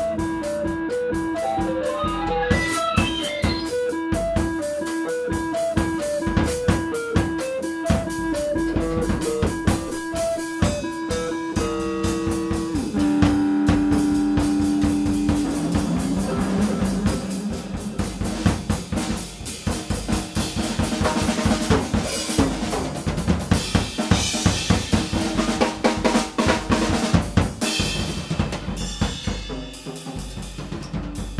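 An electric guitar and drum kit improvise together in free jazz. For about the first twelve seconds the guitar plays a repeating short-note figure over a held low note while the drums hit steadily. The guitar holds a long note for a couple of seconds, and then the drumming gets busier, with cymbals washing through the second half.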